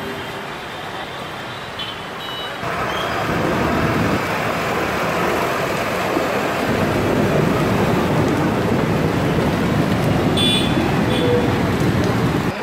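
Road traffic driving through floodwater. From about three seconds in, a nearby bus's engine and wheels churning through the water grow louder and stay loud, a dense, noisy rush, with a brief high-pitched sound near the end.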